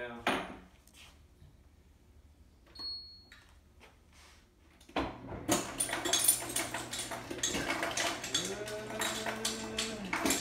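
About five seconds of near silence with a few faint clicks, then ice cubes clattering loudly into a cup, a dense run of small rattling hits over a steady low hum.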